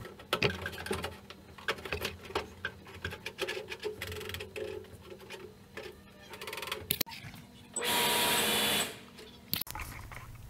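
Light clicks, taps and scrapes of a metal microwave mounting plate being handled and set down on the microwave's sheet-metal casing. About eight seconds in, a hiss lasting about a second is the loudest sound.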